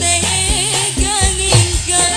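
Live band with a female singer: a wavering, ornamented sung melody over a steady drum beat and bass.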